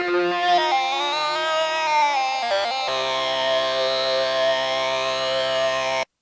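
Surge synthesizer 'Octave Dodger' lead patch playing sustained notes that slide in pitch. From about three seconds in it holds one rich note with a slow sweeping shimmer in its upper tones, which cuts off suddenly at the end.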